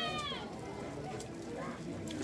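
A high-pitched, drawn-out call that falls in pitch and stops about half a second in, followed by a faint outdoor background.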